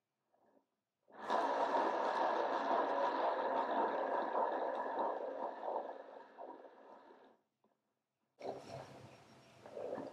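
A hand-spun turntable carrying a paint-poured board whirring on its bearing as it spins freely, starting suddenly and fading out over about six seconds as it slows to a stop. A brief, fainter whir follows near the end.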